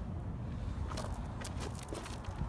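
Footsteps on gravel and dry grass, a few faint crunches over a steady low rumble of wind and handling noise on a handheld phone microphone.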